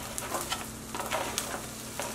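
Diced onions sizzling in a hot skillet with a little bacon fat, as they start to sauté. A few short, light clicks of a utensil moving them sound over the steady sizzle.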